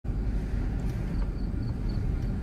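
Car cabin noise while driving slowly down a street: a steady low rumble of engine and tyres heard from inside the car.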